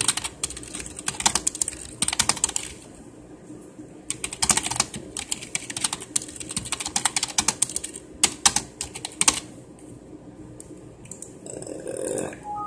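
Fast typing on a computer keyboard in two bursts of rapid key clicks: one of about two and a half seconds, then after a short pause a longer run of about five seconds, thinning to a few stray clicks near the end.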